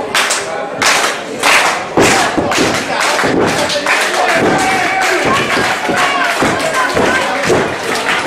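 Wrestlers' bodies thudding on the ring mat, a few heavy hits in the first two seconds, with crowd voices and scattered clapping over them.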